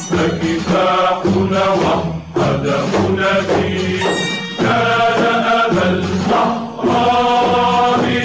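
Music: a group of voices chanting an Arabic patriotic song in unison over instrumental accompaniment. The phrases last about two seconds each, with short breaks between them.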